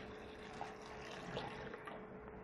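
Water poured from a glass jug into a steel mixer-grinder jar holding cucumber pieces and mint leaves: a faint, steady pour.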